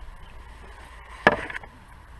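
A single sharp knock close to the microphone about a second in, with a short rattle after it.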